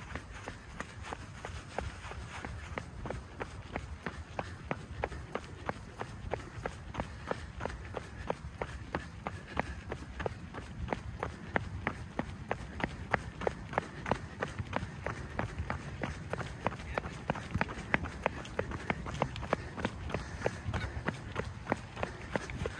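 Running footsteps on a rubberized synthetic track: an even beat of about three steps a second, with a steady low rumble underneath.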